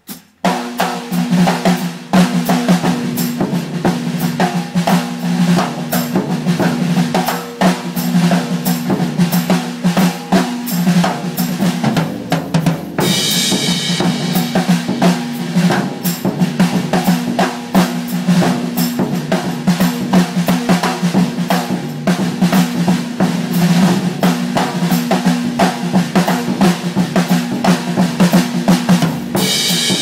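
Drum kit played with sticks: dense, rapid strokes on snare, toms and bass drum over a steady low ring, with cymbal crashes about halfway through and again near the end.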